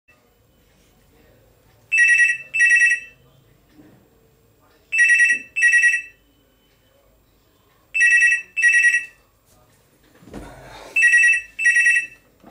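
BPL desk telephone ringing with an electronic double ring: four pairs of short, shrill two-tone trills, about three seconds apart. A brief low rustle comes just before the last pair.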